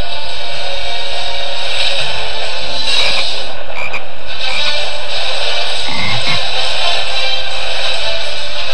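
Cartoon frogs croaking in an animated clip, overlapping with the soundtracks of other DVD openings playing at the same time.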